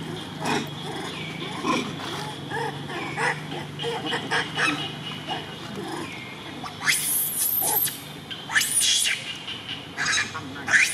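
Young long-tailed macaque screaming: loud, high-pitched squeals in two bouts, about seven seconds in and again a second later, after several seconds of only faint scattered sounds.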